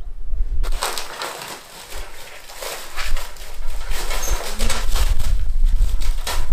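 Irregular rustling and scraping of materials being handled, starting about a second in, with a low rumble underneath in the second half.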